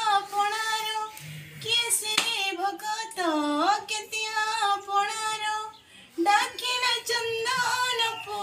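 A young woman singing a song unaccompanied, holding long notes with slides between them and a short break near the end. A single sharp click sounds about two seconds in.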